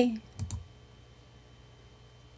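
The tail of a woman's drawn-out spoken syllable, falling in pitch, then two quick clicks on a computer about half a second in, followed by quiet room tone.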